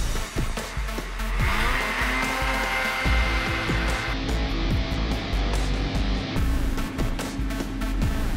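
Two-stroke Ski-Doo snowmobile engines revving as the sleds pull away, with a rising whine about a second and a half in that holds for a couple of seconds. Background guitar music plays over them.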